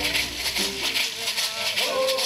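Stomp dance music: shell shakers keeping a steady rattling beat under a man's singing voice.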